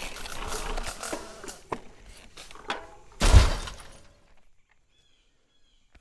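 Drone crashing into tree branches: a low rustle with scattered clicks, then about three seconds in a sudden loud crash of breaking and a heavy thud. It fades out and the sound cuts to silence.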